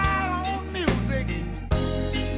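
Blues band playing an instrumental break: a lead instrument holds a bent, wailing note that slides down and fades about a second in, over bass and drums.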